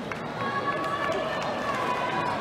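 Football match crowd ambience in a sparsely filled stadium, with voices calling out and one long drawn-out shout or sung note beginning about half a second in.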